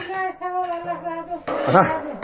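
A woman's voice drawing out a long, steady note for about a second and a half, then breaking into speech.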